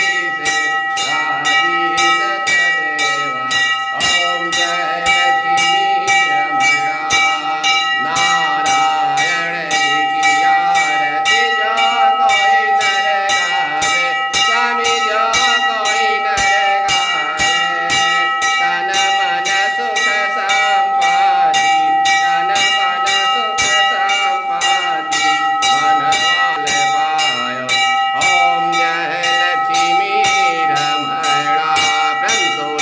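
A puja hand bell rung steadily through the aarti, about three strikes a second, its ring held on between strokes. A man's singing voice runs along with it.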